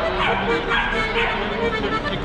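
A piano accordion playing a tune in held notes, with a few short high-pitched cries over it.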